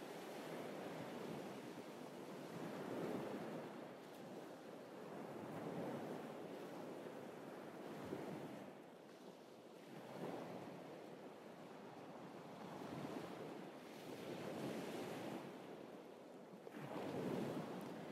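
Small waves breaking and washing up a sand-and-pebble beach, faint, swelling and falling back every few seconds.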